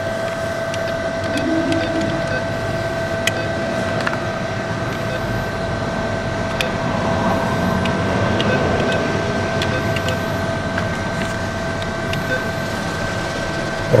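Steady machine hum with two constant tones, and a few short, light clicks spread through it as keys are pressed on an NCR cash machine's keypad to enter the PIN and the amount.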